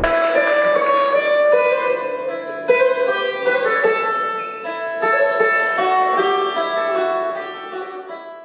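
Orchestra with strings playing an instrumental passage of a film song, a melody of held notes, growing quieter near the end.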